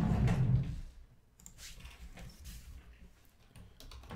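Trading cards being slid by hand across the tabletop break mat: a low rubbing slide in the first second, then a few faint taps and handling clicks as the cards are set down.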